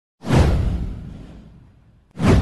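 A whoosh sound effect with a deep boom underneath, starting suddenly a moment in and fading away over about a second and a half.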